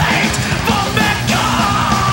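Speed/thrash metal from a 1992 demo tape: shouted vocals over distorted electric guitars, bass and fast, busy drumming.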